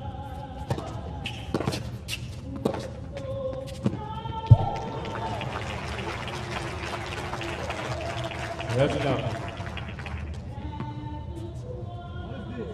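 Tennis balls struck by rackets in a short rally on a hard court: five sharp hits about a second apart, the last and loudest about four and a half seconds in. Crowd applause and cheering follow for several seconds as the point is won.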